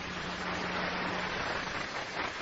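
Large audience applauding, a dense, steady patter of many hands clapping that holds level, with a faint low steady hum under it for the first second and a half.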